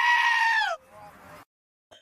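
A sheep's long bleat, the screaming-sheep meme played back over the stream. It is held on one pitch and falls away about three-quarters of a second in.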